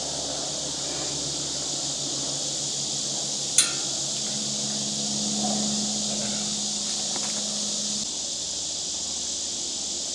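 Steady high chorus of insects, with a single sharp click about three and a half seconds in and a low steady hum that comes in about four seconds in and stops about eight seconds in.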